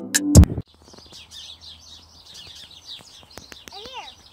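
A drum-machine music track cuts off about half a second in, and a flock of small birds takes over, chirping busily with many overlapping calls.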